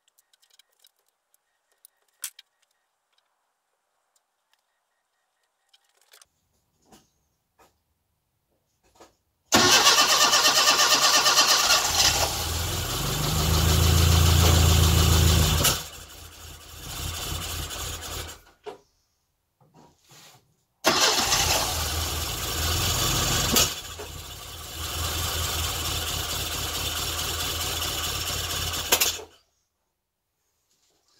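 A classic Mini's A-series four-cylinder engine firing for the first time after a rebuild. It catches suddenly about a third of the way in, runs for about six seconds with a rise in revs, and dies away. It catches again near the middle and runs for about eight seconds before cutting off suddenly: it will not yet keep running.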